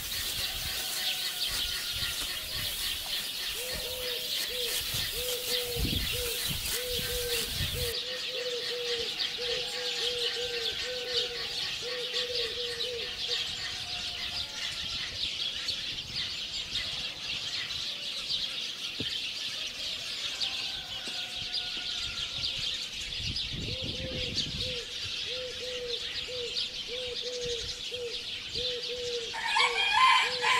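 Birds calling over open farmland: a dense chorus of high chirping throughout, and a low call repeated in steady series, about one and a half a second, first for around ten seconds and again near the end.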